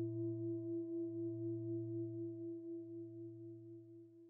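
Sustained ringing tone with a slow, wavering beat, fading away toward the end.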